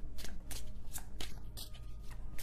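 Tarot cards being shuffled by hand: an uneven run of short, papery card-on-card flicks.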